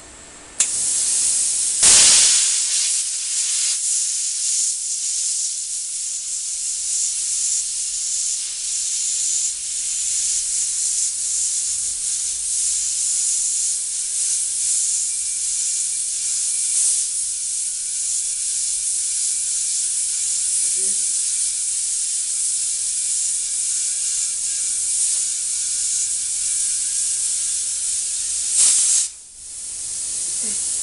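Cheap Chinese plasma cutter cutting the steel wall of a gas cylinder: a steady loud hiss of air and arc at the torch. There is a sharp burst about two seconds in, and the hiss cuts off just before the end.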